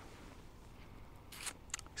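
Quiet outdoor background with a faint low rumble. Two brief soft rustle-like noises come near the end.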